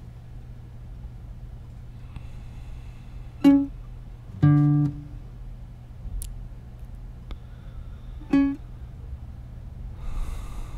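Acoustic guitar playing sparse single plucked notes, each ringing briefly and then left to fade: one about 3.5 s in, a lower and louder one about a second later, and a third near the end.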